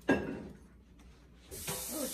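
A brief thump at the very start, then a tap running with a steady hiss that starts abruptly about one and a half seconds in: water for washing sticky syrup off hands.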